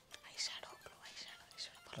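Soft whispered speech: a person muttering under their breath in short breathy bursts.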